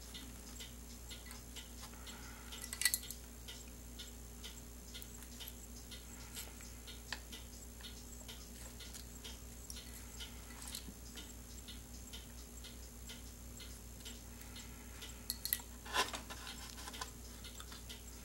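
Faint steady ticking of a clock, with a few small metal clicks of pen kit parts being handled on the bench, louder about three seconds in and again around sixteen seconds in.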